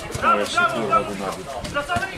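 Men's voices shouting at a football match, loud raised calls in short bursts with no other clear sound.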